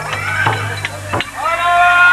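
Street procession sounds of a Newari dance: voices and music, with a low hum that cuts off in a sharp click a little past halfway, followed at once by a long steady high note.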